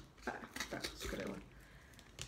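A few small clicks and scrapes from the plastic cap of a supplement bottle being worked open by hand.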